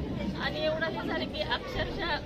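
Speech only: a woman speaking into close microphones, with chatter from the people around her.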